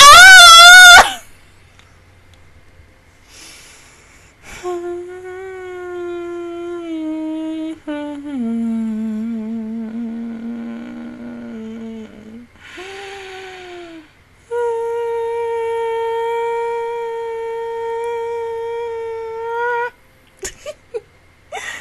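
A woman's voice belts one loud note with a wide vibrato, then hums a few long, steady held notes. The first held notes step down in pitch and the last one sits higher, with breaths taken between them.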